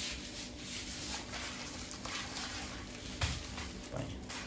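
Plastic and bubble-wrap packaging on a long fishing rod parcel rustling and rubbing as it is handled and turned, with a light knock about three seconds in.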